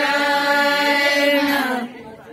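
Women singing a Hindi devotional song (bhajan), holding one long note that slides down slightly and stops near the end.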